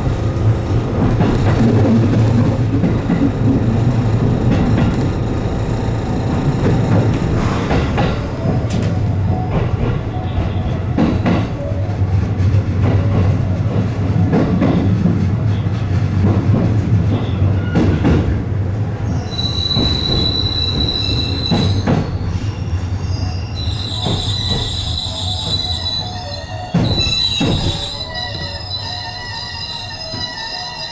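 JR West 207 series electric train running on the rails and slowing into a station, with squeal from the wheels and brakes. In the last third, after the train has stopped, a high electronic melody plays in short repeated phrases, and there is a thump shortly before the end.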